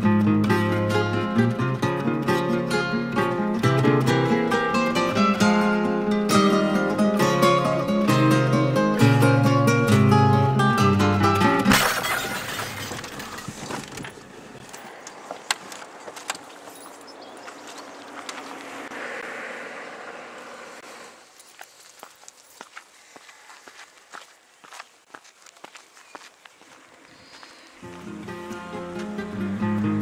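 Plucked-string instrumental music, cut off about twelve seconds in by a sudden crash of breaking glass: a thrown stone smashing a car headlight. After it, quieter outdoor sound with scattered clicks and knocks, and the music comes back near the end.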